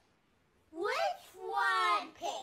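A cartoon cat's meow-like vocal calls, pitch-shifted and layered by the 'Low G Major 7' voice effect: a rising call about three-quarters of a second in, then a longer, steadier one near the end.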